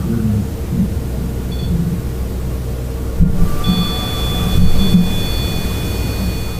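Low rumbling background noise, with a steady electronic tone from an EMF meter starting a little past halfway and lasting about three seconds: an EMF alert, the meter picking up an electromagnetic reading.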